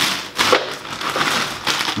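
Plastic bags and frozen-food packaging crinkling and rustling as they are handled, in irregular crackles, with the sharpest about half a second in.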